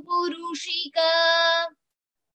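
A female voice chanting a Sanskrit verse in long notes held on a steady pitch, stopping about three-quarters of the way through.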